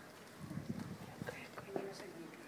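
Low murmur of voices from a standing crowd, with a few short knocks or footsteps on pavement.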